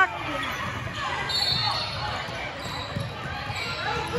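Basketball bouncing on a hardwood gym floor during play, with voices in a large hall.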